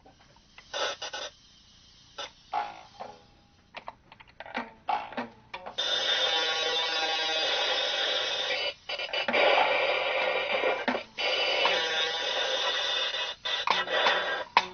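Improvised experimental playing on a hurdy-gurdy. Scattered short scraping strokes give way, about six seconds in, to a loud, dense, sustained drone with a few brief breaks.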